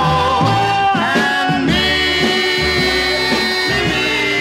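Swing orchestra music from a 1962 recording, with a long held chord starting a couple of seconds in over moving bass notes.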